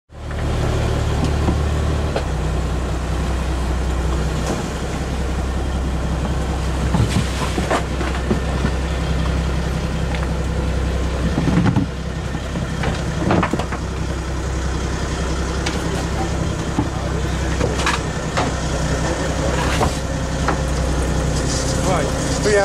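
Fishing boat's engine running steadily with a low hum, under the hiss of wind and sea, with a few short knocks on deck.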